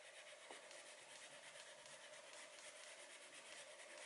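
Faint, steady rubbing of a wax crayon colouring on paper.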